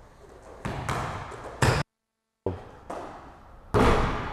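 Basketball bouncing hard on an indoor court floor: a handful of separate bounces, each ringing briefly in the hall. The sound drops out completely for about half a second just before the middle.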